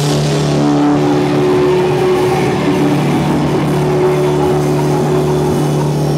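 Punk rock band playing live through amplifiers: electric guitars and bass holding sustained chords that ring steadily.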